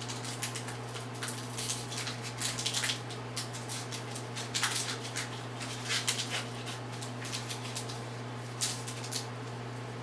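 Foil wrapper of a Pokémon TCG booster pack being torn and crinkled open by hand: a string of irregular crackles and rustles, a few louder ones, over a steady low hum.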